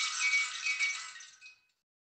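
Clockwork tin toy running: its wound spring drives a small tin horse and carriage round inside a tin house, a fast metallic rattle with thin ringing that fades and stops about one and a half seconds in as the spring runs down.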